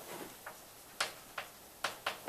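Chalk writing on a blackboard: about four sharp clicks and taps, unevenly spaced, as the chalk strikes the board.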